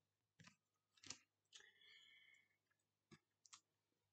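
Near silence, broken by a few faint, sharp clicks and taps from oracle cards being handled on a table.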